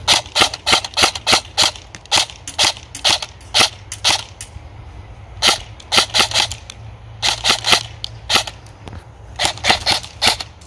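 Airsoft electric rifle (an EMG SAI GRY M4 AEG with a G&P i5 gearbox, on an 11.1 V battery) firing quick single shots on semi-automatic, each trigger pull a sharp snap, in strings of several shots with short pauses between them.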